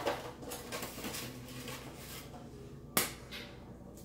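An egg struck once, sharply, against the rim of a glass mixing bowl to crack it, about three seconds in. Before it, a click and soft handling rustle as the next egg is picked up.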